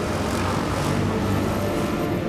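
A steady low rumble under the sustained, held tones of a dark film score.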